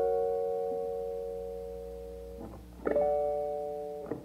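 A quiet stretch of a song with no vocals: a guitar chord rings and slowly fades, and a second chord is struck about three seconds in and left to ring.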